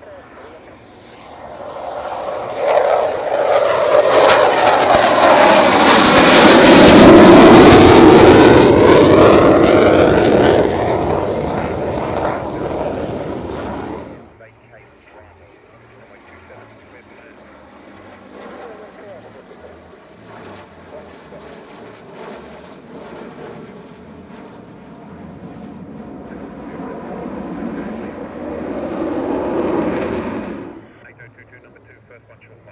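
Military fighter jet passing overhead. Its engine noise swells over several seconds to a loud peak about seven seconds in, sweeps in tone as the jet goes by, then fades, and it breaks off abruptly about fourteen seconds in. A quieter jet noise from a formation of jets then builds steadily toward the end.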